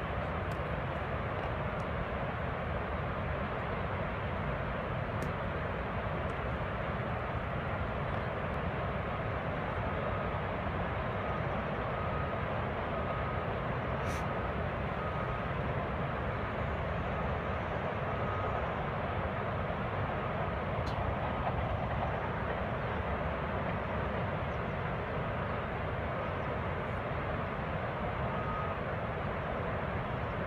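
Steady, unchanging roar of water pouring down the eroded Oroville Dam spillway, heard through a phone livestream that cuts off the high end.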